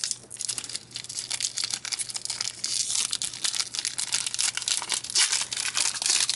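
Pokémon card booster pack wrapper being torn open and crinkled by hand, a continuous crackling rustle that gets a little louder near the end.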